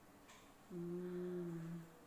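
A woman's voice humming a single closed-mouth "hmm" on one steady, held pitch, lasting a little over a second, starting under a second in.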